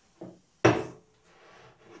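A drink can set down on a tabletop: one sharp knock about two-thirds of a second in, after a faint tap.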